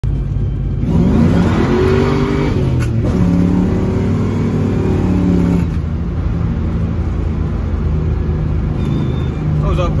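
Ford Fox-body Mustang 5.0 V8 with an X-pipe exhaust, heard from inside the car, revving up hard in first gear, shifting with a short click near three seconds in, and pulling up again in second. At about six seconds in the driver lifts off and the engine settles to a steady cruise.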